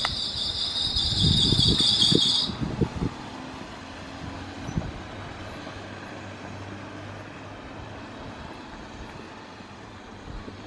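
A shrill, steady insect buzz with rumbling wind gusts on the microphone, cutting off abruptly about two and a half seconds in; after that only a faint steady outdoor hum with a low drone remains.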